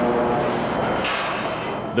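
Steady mechanical din of a car-body assembly line with industrial robots: a dense rumble and hiss that turns brighter and hissier for a moment a second in.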